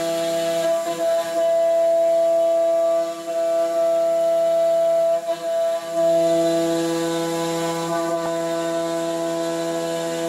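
CNC vertical mill rigid-tapping 7/16 threads in billet aluminium under flood coolant: a steady whining hum of several held tones with a hiss above. It dips briefly about one, three and five seconds in and gets louder from about six seconds.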